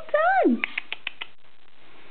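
African grey parrot saying 'well done' in a high, clean, speech-like voice, ending about half a second in, then about six quick sharp clicks.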